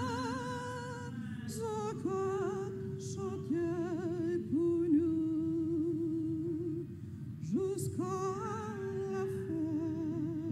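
A woman singing a religious song solo into a handheld microphone, holding long notes with a wide vibrato and sliding up into them.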